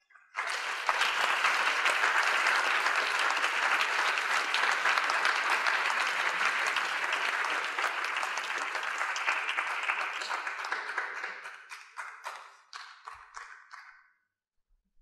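Audience applauding: a dense round of clapping that starts about half a second in, then thins after about eleven seconds into scattered single claps and dies away near the end.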